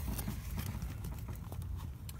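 Handling noise of a hand-held phone camera being moved: irregular faint clicks and knocks over a low rumble.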